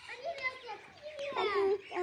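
Young children's high-pitched voices calling out in short bursts during play, the loudest call about one and a half seconds in.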